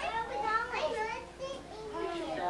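Children's voices, chattering and calling out in high-pitched, unclear speech, over a steady low hum.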